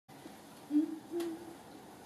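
A woman's voice softly humming two short, low notes, the second a little higher, taking her starting pitch for an unaccompanied song.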